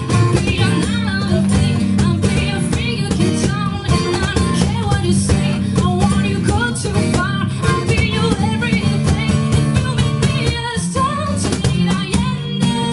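Live acoustic band playing: acoustic guitars with a woman singing and a steady beat from a cajón.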